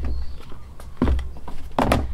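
Three knocks and thuds as a plastic bucket of ground bread is tipped out into a plastic tray and then set down on a wooden deck, the loudest double knock near the end.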